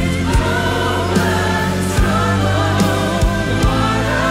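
Live gospel music: a man and a woman sing a duet into handheld microphones, backed by a mass choir, with a steady bass and beat underneath.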